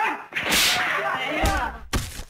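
Film fistfight sound effects: a sharp swish of a blow about half a second in, then shouting and grunting voices, and two punch thuds in the second half.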